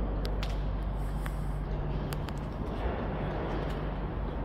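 Steady low background hum with a few faint, scattered clicks.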